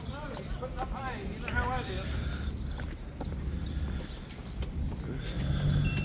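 Open-air background: faint voices of people talking at a distance over a steady low rumble, with a few scattered light knocks.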